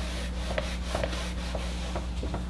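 Eraser rubbing across a whiteboard in repeated back-and-forth wiping strokes.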